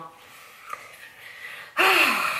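A woman's soft breathing, then a sudden loud breath near the end, her reaction to the strong aftershave smell of the balm she has just put on her face.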